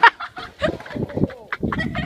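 Person laughing hard in short, rapid cackling bursts.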